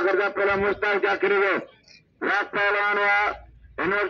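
A voice calling out in a loud, drawn-out sing-song chant, in held phrases with two short breaks.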